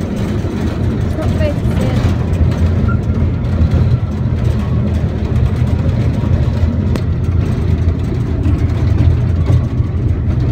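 Small passenger train carriage running along its track: a steady low rumble.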